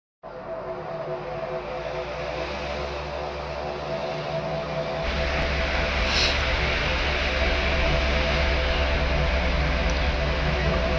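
A low, steady drone with held tones that gradually swells in loudness, deepening about halfway through, with a brief hiss about six seconds in.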